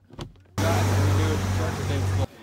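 Car's interior door handle pulled, with a faint latch click. About half a second in, a loud steady noise with a low hum sets in.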